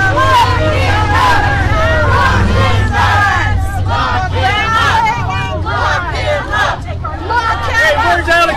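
Several adults shouting over one another in a heated argument, with crowd babble around them. No single voice is clear.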